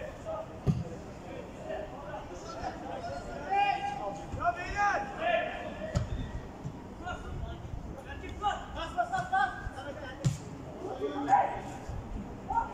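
Football players calling out to one another on the pitch, their voices coming in short bursts, with the dull thud of a football being kicked three times.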